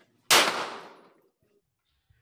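A single pistol shot about a third of a second in, its report echoing off the range's concrete walls and dying away over nearly a second.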